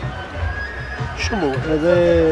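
A man's voice singing or chanting a wordless refrain: a sliding rise about a second and a half in, going into a held note.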